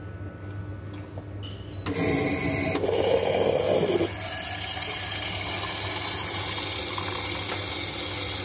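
Fully automatic coffee machine dispensing into a paper cup. A low hum gives way, about two seconds in, to the louder run of the machine, rougher for a second or so, then settling into a steady hissing, liquid-filling sound.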